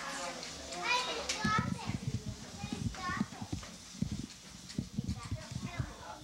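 Several young children chattering and calling out as they play, with repeated low thumps and knocks from about a second and a half in.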